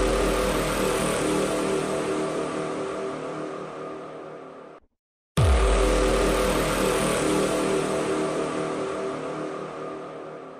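A dramatic sound effect: a sudden deep boom fades into a dense rushing tone with steady pitched lines and cuts off abruptly after about five seconds. Halfway through, the same effect plays again identically.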